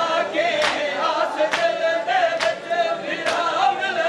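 Mourners performing matam: a group of men chanting a lament together, with hands slapping bare chests in unison on the beat, about one slap a second.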